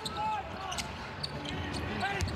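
NBA game court sound: a basketball bouncing on the hardwood floor with short sneaker squeaks over steady arena background noise.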